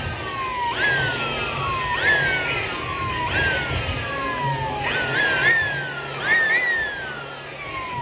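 A whistling tone that leaps up sharply and then slides slowly down in pitch, repeating about every second and a half, over a low steady hum.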